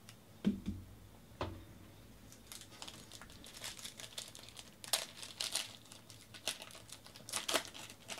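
Two light knocks early on, then the foil wrapper of a 2019 Panini Origins football card pack crinkling and tearing as it is opened by hand, a dense run of crackles from about two and a half seconds in.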